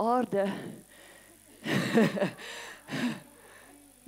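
A woman's voice laughing and saying a few unclear words, in three short bursts with quiet gaps between.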